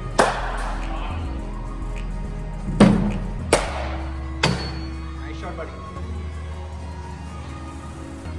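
Music playing, with four sharp knocks of cricket balls in indoor practice nets, the loudest about three seconds in, each followed by a short echo of the hall.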